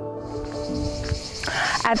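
Soft background music with held low notes fades out while a steady, high-pitched insect chorus fades in about a quarter of a second in and carries on underneath. Near the end there is a brief burst of noise, then a woman begins to speak.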